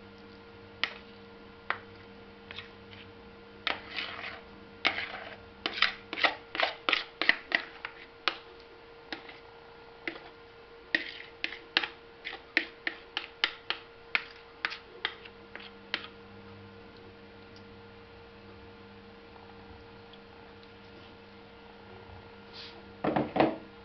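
A knife repeatedly knocking and scraping against a container's rim as egg spread is scraped out into a bowl: a run of sharp clicks, dense in two spells, that stops about two-thirds of the way through, over a steady low hum.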